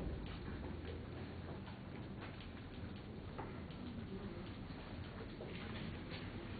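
Faint, irregular clicking, many small clicks in a row, over the low hum of a quiet room.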